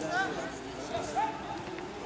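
Football players shouting and calling out to each other during open play, over outdoor background, with a sharp knock right at the start.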